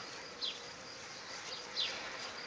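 Faint outdoor background of steady, high insect chirring, with two short high chirps that fall in pitch, about a second and a half apart.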